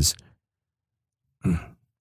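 A man's spoken phrase trails off, a second of silence follows, then he gives a short sigh about one and a half seconds in.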